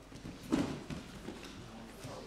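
Grappling on a mat: a thud about half a second in as the standing clinch goes to the ground, with scuffling of bare feet and bodies around it.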